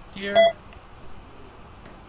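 A short electronic beep of a few clear tones sounding together, about half a second in: the confirmation that a point has been recorded with the Master3DGage measuring arm's probe.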